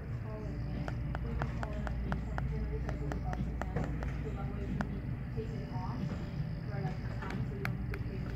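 Fingertips tapping on the back of a Google Pixel 2 XL: a quick run of light taps, about four or five a second, then a few scattered taps later. The taps give no metallic ring, which is taken as the sign of a coating over the phone's metal body.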